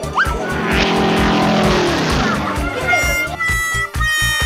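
A cartoon jet-flyby whoosh: a rushing swell with a falling pitch for the paper plane's flight, over background music with a steady beat.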